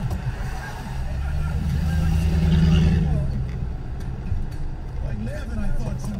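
A vehicle engine running, heard from inside a car's cabin; its low hum swells about a second in and eases off after three seconds.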